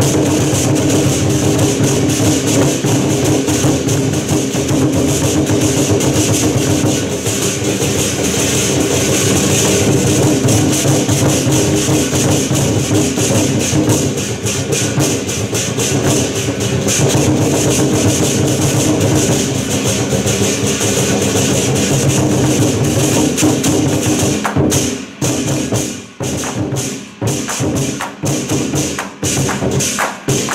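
An ensemble of large Chinese barrel drums struck with wooden sticks, playing fast, dense, unbroken strokes. About three-quarters of the way through, the drumming breaks into separate accented strikes with short gaps between them.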